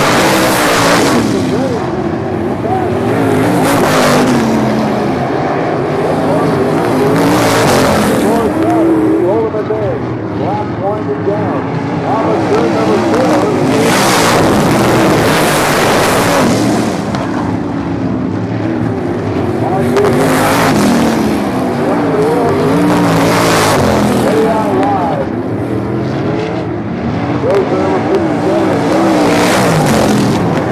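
Wingless dirt-track sprint cars racing, engines rising and falling in pitch with the throttle as they slide through the turns, with a loud pass-by every few seconds as cars go by close.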